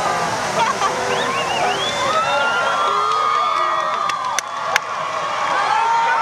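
Steady hiss of the show's water-screen fountains spraying, under many overlapping crowd voices talking. The show soundtrack has cut out, so no music is heard. Two faint clicks in the second half.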